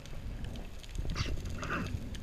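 Low, muffled rumble of water against an underwater camera, with a short two-part hiss a little past a second in, the first part higher-pitched than the second.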